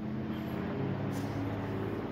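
Steady low machine hum, even in level and pitch, with a faint click about a second in.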